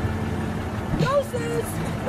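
Steady low hum of idling vehicle engines under indistinct voices.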